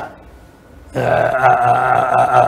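A short pause, then about a second in a man's low, drawn-out hesitation sound, a held 'eeeh' on one pitch, before his next words.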